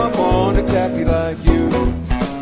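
A live band playing: electric guitars over bass and drums, with a man singing at the start.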